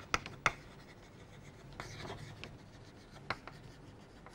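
Chalk writing on a blackboard: short, irregular scratching strokes with a few sharp taps of the chalk, the sharpest in the first half-second.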